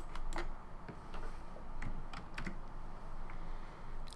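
Computer keyboard keys being typed, a few irregularly spaced keystroke clicks as a short name is entered.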